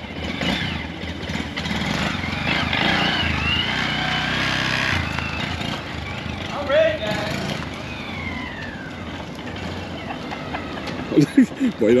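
2022 Honda Grom SP's small single-cylinder engine running as the mini motorcycle rides off across the lot, its note rising around the middle and falling away later.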